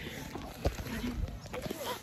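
Low thumps from a handheld phone being jostled while its holder walks, with faint voices in the background.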